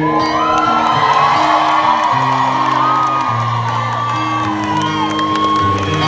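Live band playing an instrumental passage, acoustic guitar and held chords that change about once a second, with the crowd whooping and cheering over the music.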